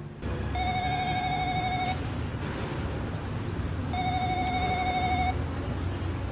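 Building intercom call tone sounding twice, each a warbling electronic ring of just over a second, about two seconds apart, over a steady low background hum. The call goes unanswered.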